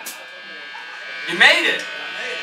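Steady electric buzz from the stage amplification of a live band between songs, a hum with many overtones. About one and a half seconds in, a voice shouts briefly into the microphone over it.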